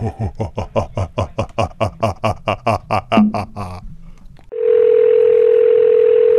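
A man laughing in a long run of rapid bursts, then a steady telephone tone over line hiss for about two seconds, which cuts off suddenly.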